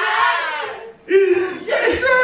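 Men shrieking and yelling in high, put-on voices: one long held cry, a brief break about a second in, then another shout.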